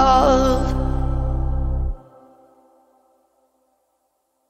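The final bars of a pop song: a sung note ends within the first second over sustained synth chords and bass. The bass stops about two seconds in, and the remaining chords die away to silence a second later.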